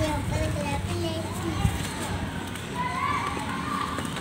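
Children's voices calling and playing in the background, over the dry crunch and crumble of sun-dried mud chunks being broken apart by hand.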